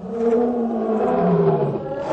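Cartoon sound effect of a large animal's long roar, slowly falling in pitch.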